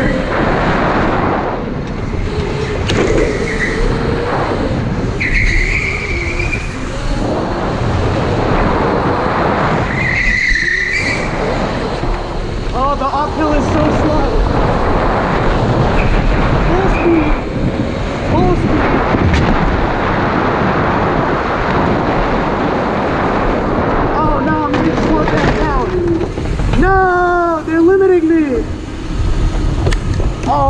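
Electric go-kart running at speed, heard from a camera on the kart: a steady rumble with wind on the microphone, and a few short high squeals through the corners.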